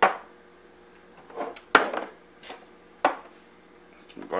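Glass spice jars and a salt shaker being handled and set down on a kitchen countertop: several sharp knocks and clinks about a second apart, the loudest at the very start.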